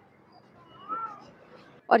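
A single short high-pitched call that rises and then falls in pitch, about a second in.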